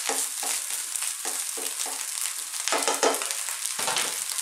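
Cooked rice frying over high heat in a non-stick frying pan, with a steady sizzle. Repeated short scrapes of a spatula across the pan as the rice is pushed to one side.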